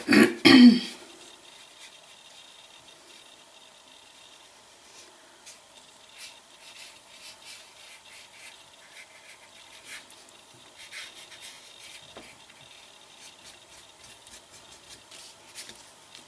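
A person clears her throat twice at the start. Then faint, scattered scratchy strokes of a small paintbrush dabbing black acrylic paint onto paper.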